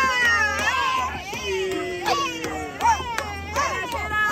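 Several excited, high-pitched voices shouting and hollering over one another, over music with a deep, pulsing bass.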